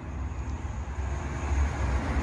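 Road traffic running past: a steady low rumble with a broad hiss, swelling a little past the middle.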